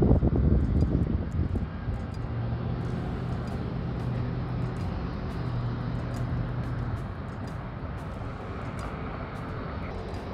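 A distant engine hums steadily, with a louder low rumble at the start and a low drone that holds from about two seconds in to about seven.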